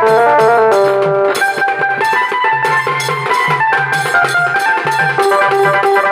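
Wedding band music: an electronic Casio keyboard plays a folk-song melody over a bass line while large stick-beaten drums and a small hand drum keep a steady, loud beat. The beat gets denser about a second and a half in.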